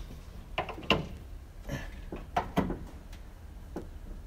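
Things being handled in a car's open boot: about half a dozen light, irregular knocks and clunks.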